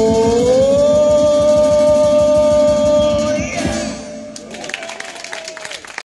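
A male voice holds the final sung note, stepping up in pitch about half a second in, over fast strummed acoustic guitar; voice and guitar stop together about three and a half seconds in. Light scattered applause follows.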